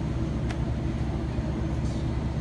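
A steady low mechanical hum, with a single sharp click about half a second in.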